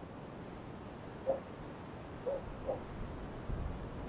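A dog whining in three short whimpers over a steady hiss of wind and surf.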